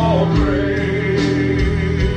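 Gospel music with singing: voices hold long notes over a steady bass accompaniment.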